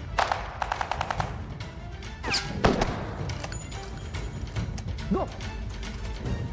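A short burst of rapid automatic gunfire in the first second, over a tense action-film score with a steady low rumble. A louder sweeping hit comes midway.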